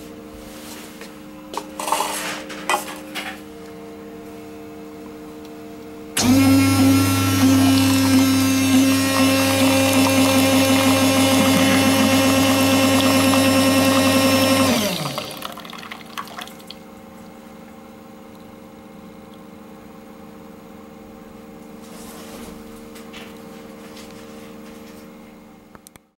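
Coffee machine running an instant rinse: about six seconds in its pump starts loud and steady, pushing water out through the spout into a cup for about nine seconds, then stops. A few clicks come before it, and a quieter steady hum after.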